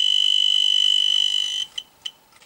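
Handheld dosimeter sounding a steady high-pitched alarm tone because its reading of about 9 mR/h is above its danger threshold. The tone cuts off suddenly about one and a half seconds in, and two short beeps follow near the end.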